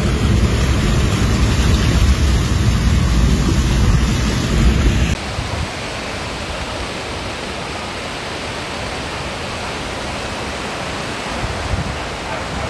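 Floodwater rushing, loud with a heavy low rumble; about five seconds in it cuts to a quieter, steady hiss of water.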